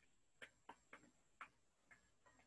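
Near silence with about five faint, irregularly spaced clicks.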